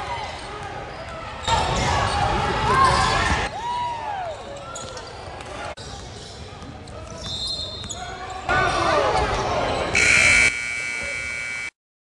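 Game sound of a youth basketball game in a gym that echoes: the ball bouncing on the hardwood, sneaker squeaks and players' and spectators' voices, with two louder stretches. Near the end a steady tone sounds, then the sound cuts off suddenly.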